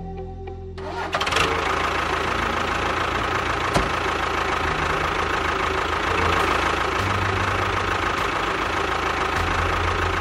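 Tractor-style engine sound starting up about a second in, then running steadily and loudly with a faint steady whine, heard with a toy tractor.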